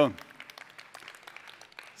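Light, scattered applause from an audience, many irregular claps, just after a man's spoken greeting ends.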